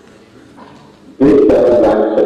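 A short quiet pause, then about a second in a man's voice over the room's loudspeakers breaks in abruptly and loudly. The voice is drawn out and garbled, the sound of a remote lecturer's audio through a video-call link.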